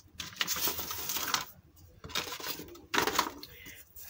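Thin clear PVC sheet and brown paper rustling and crackling as they are handled and shifted, in two stretches with a short pause in between.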